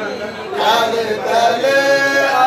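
Melodic vocal chanting, with notes held and gliding up and down.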